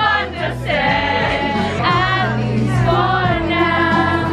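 Several young women singing together along to a song, their voices wavering over the track's steady bass notes.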